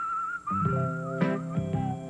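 Commercial jingle music: a whistled melody starts suddenly, and plucked-string chords join in about half a second later.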